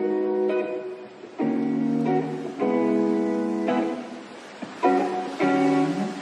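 Background music: an acoustic guitar strumming a series of chords, a new chord about every second.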